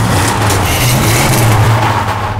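Car engine revving hard under heavy tyre and road noise, loud and sustained, as the car drives off.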